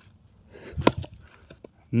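An axe chopping into the side of a crooked log lying flat: one sharp chop about a second in, followed by a couple of faint knocks.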